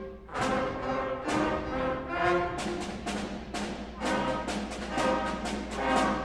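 A school instrumental ensemble plays a loud piece of accented chords with drum strikes. It ends on a final chord near the end that rings off.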